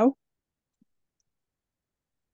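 A man's voice over a video call ends a word and cuts off sharply, followed by silence.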